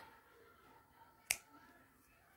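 Scissors snipping through crochet yarn once: a single short, sharp click about a second in, with little else to hear around it.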